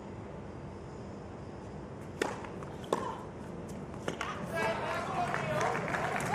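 Tennis ball struck by rackets: a serve about two seconds in, the return under a second later and another hit about a second after that, over the low hum of an outdoor court crowd. A voice comes in near the end.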